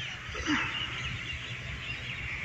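Faint open-air ambience with distant bird calls, and one slightly louder brief call about half a second in.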